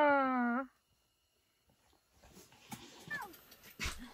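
A person's drawn-out vocal sound, one held note falling slightly in pitch, that ends just over half a second in, then near silence with a faint click near the end.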